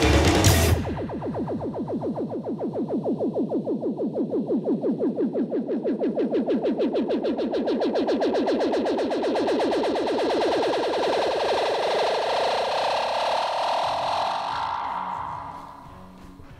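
The end of a punk rock recording: the full band with guitar and drums stops about a second in, leaving a fast, even pulsing effected sound that sweeps steadily upward in pitch and fades out near the end.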